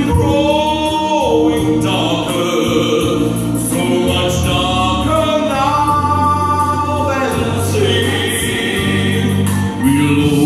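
A man singing a musical-theatre ballad solo into a microphone, amplified through a PA, holding long notes over a steady instrumental accompaniment.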